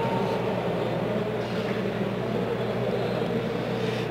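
Steady low hum and background noise, even throughout with no distinct events.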